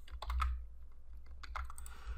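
Typing on a computer keyboard: a quick run of key clicks at the start, a pause, then a few more clicks a little past the middle, over a steady low hum.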